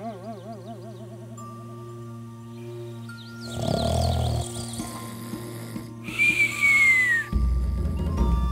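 Animated-series soundtrack: background music with held tones, a warbling tone fading out over the first two seconds, then a short burst of chirps about halfway through and a falling whistle about six seconds in.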